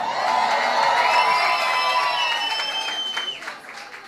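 Audience cheering with high shouts and whoops over applause. It dies down about three seconds in.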